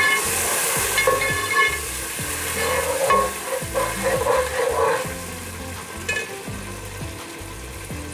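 Sliced onions and ginger-garlic paste sizzling in hot oil in an aluminium pot while a steel perforated spoon stirs them, scraping and knocking against the pot. The hiss is brightest in the first second.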